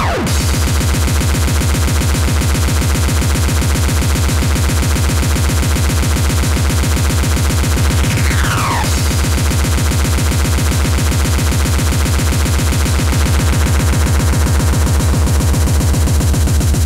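Speedcore track: a very fast, unbroken stream of heavy kick drums under a dense, noisy layer of sound. About eight seconds in, a falling glide sweeps down as the bass briefly drops out.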